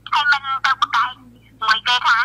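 Speech only: a caller's voice on a phone line, coming thin and tinny through a mobile phone held up to a studio microphone, with a low steady hum underneath.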